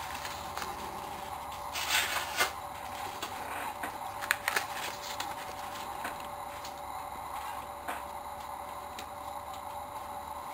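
Old paper banknotes being handled and shifted on a pile, with short rustles and crinkles about two seconds in, again around four and a half seconds and once near eight seconds, over a steady background hum.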